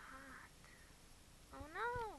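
A cat meowing: a short, even call at the start, then a louder, longer meow near the end whose pitch rises and falls.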